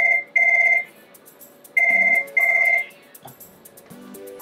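Electronic telephone ringing in a double-ring pattern: two pairs of short, steady electronic tones, the second pair about two seconds after the first, then the ringing stops.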